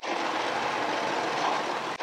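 Steady rushing hiss from a stainless steel steamer pot on the boil beneath the fish, starting and stopping abruptly.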